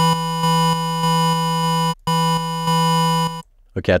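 Syntorial soft-synth patch of two square-wave oscillators, one two octaves and a fifth above the other, holding a note whose volume jumps up and down in random steps under a sample-and-hold LFO. The note sounds twice, about two seconds and then about one and a half seconds, with a brief break between.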